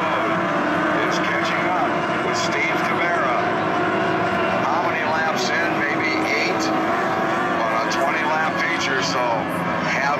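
Outboard engines of SST 60 racing tunnel boats running flat out, a steady high-pitched whine whose pitch slides as the boats pass.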